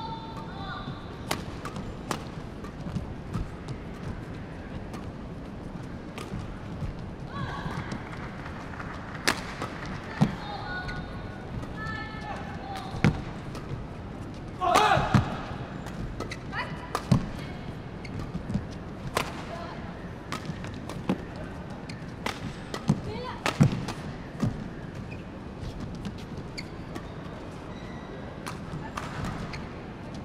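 Badminton rally on an indoor court: sharp racket strikes on the shuttlecock and players' footfalls, with short shoe squeaks, and a voice calling out once about halfway through.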